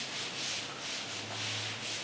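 A duster being rubbed back and forth across a chalkboard to erase chalk writing, in repeated scrubbing strokes at about three a second.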